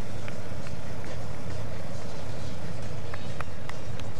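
Steady engine rumble and road noise from the camera motorbike riding just ahead of the racing cyclists, with a few faint clicks.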